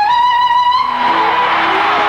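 A woman singing live on stage, holding a long high note, then dropping to lower notes about a second in, over band accompaniment.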